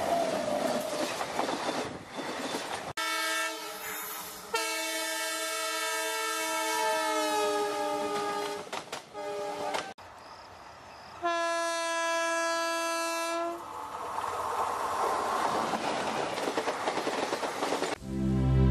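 Passing trains in separately edited clips joined by abrupt cuts: the rumble and clatter of coaches going by, then a long locomotive horn blast whose pitch sags near its end, then a second steady horn blast about three seconds long, followed by more rumble of a passing train.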